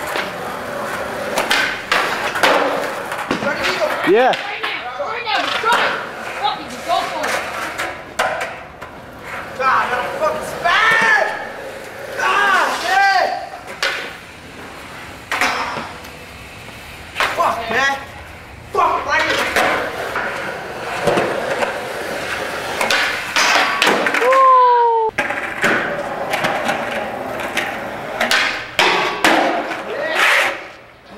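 Skateboards on concrete, stairs and a metal handrail: wheels rolling, boards clacking and hitting the ground in repeated sharp knocks, with voices in between.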